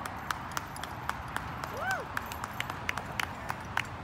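A run of sharp clicks, about three a second and irregularly spaced, with one short call near the middle whose pitch rises and then falls.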